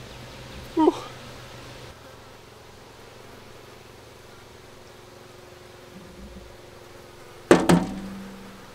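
Faint steady buzzing of flies swarming the rotting meat in a hanging maggot feeder. There is a short voice sound about a second in and a louder brief one near the end.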